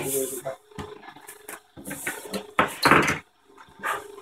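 Workbench handling noises: a large fabric sheet rustling, then several short clatters and knocks of tools and small items on the bench.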